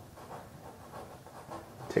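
Faint handling noise and breathing as a small clear plastic methanol tube is worked by hand onto the nipple of a methanol injector fitting.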